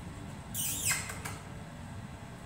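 A small dog sniffing at the floor: one short breathy sniff about half a second in, falling in pitch.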